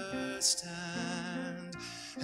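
Slow contemporary worship song: a man singing held notes over sustained instrumental accompaniment.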